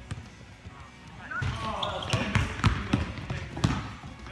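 A quick series of sharp thuds and knocks begins about a second and a half in, mixed with indistinct voices.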